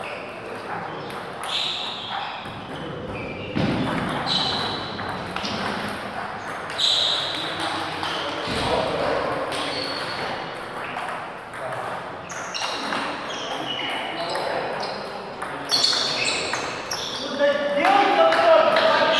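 Table tennis ball clicking sharply off bats and the table through rallies, with a lull in the middle and quicker clicks again near the end, over a steady murmur of people talking.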